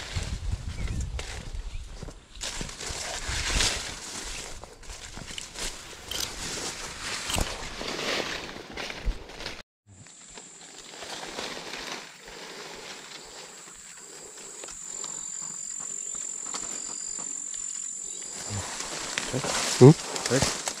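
Footsteps and rustling of leaves and fronds as someone pushes along a path through dense ferny undergrowth. After a brief break about halfway, a steady high-pitched insect drone with a fainter pulsing note below it carries on over the swampy pool.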